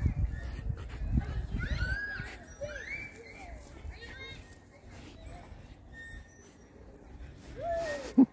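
Distant children's voices and calls from a playground, a few rising-and-falling shouts in the first half and quieter after, with a low rumble of wind on the microphone at the start.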